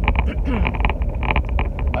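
Steady low road and engine rumble inside a moving car's cabin, with irregular light ticks and rattles over it; a throat-clear comes at the very end.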